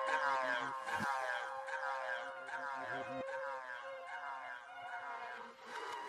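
Electronic music outro fading away: repeated falling synth glides layered over a single steady held tone, with a couple of low thuds, getting gradually quieter.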